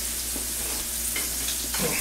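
Floured chicken breast frying in a thin layer of oil in a pan, a steady sizzle.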